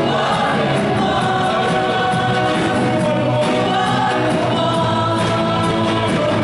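Live contemporary Christian worship music: a lead singer and group of backing vocalists singing over a band of guitars, keyboard and drum kit, with a steady beat throughout.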